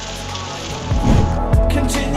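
Heavy rain on a car's windshield and body, heard from inside the cabin, then background music with a low beat coming in about a second in.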